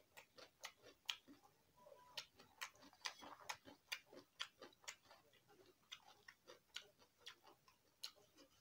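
Close, wet chewing and lip smacking of someone eating rice and vegetables by hand: an irregular run of small sharp mouth clicks, several a second.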